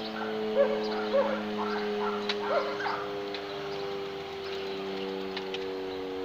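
A dog yipping and whining in short rising cries, several in the first half, over a steady droning tone of several pitches that continues throughout.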